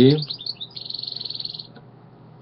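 A small songbird chirping a few quick falling notes, then giving a rapid high trill that lasts about a second.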